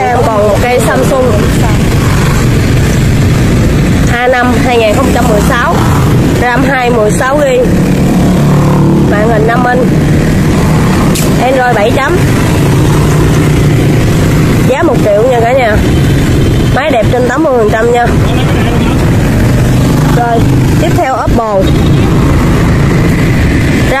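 A man's voice speaking in short, scattered phrases over a loud, constant low hum.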